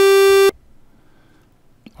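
One steady synthesizer note from FL Studio's Sytrus, playing a custom wave-shaper waveform drawn so that it traces a chess piece on an XY oscilloscope. The note is rich in overtones and cuts off abruptly about half a second in.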